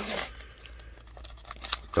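A trading-card pack wrapper being torn open by hand: a short, sharp tear at the start, then faint crinkling of the wrapper.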